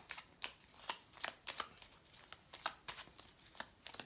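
A baralho cigano (Lenormand) card deck being shuffled by hand: quiet, short, irregular snaps of cards sliding and slapping against each other, a few per second.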